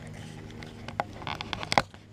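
Hands handling a red plastic gas can spout close to the microphone: a few sharp clicks and a short plastic scrape, the loudest click near the end.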